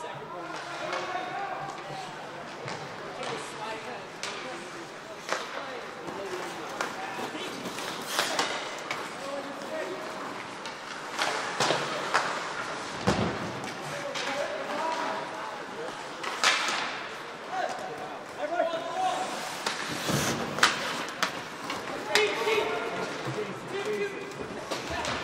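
Ice hockey play: hockey sticks clacking against the puck and each other, and the puck knocking into the boards, in scattered sharp knocks, with voices calling out across the rink.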